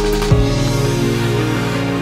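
Background music: a beat ends with a last drum hit about a third of a second in, giving way to held, softer tones.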